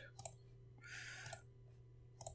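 Faint, sparse computer mouse clicks, a handful over two seconds, with a short soft hiss about a second in and a steady low hum underneath.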